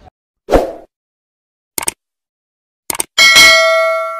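Subscribe-button animation sound effect: a short burst, then two quick clicks, then a notification-bell ding near the end that rings on with several tones, fading slowly.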